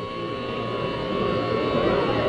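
Steady amplifier hum and buzz from the stage between songs, under indistinct crowd chatter that grows a little louder toward the end, heard on a lo-fi audience recording.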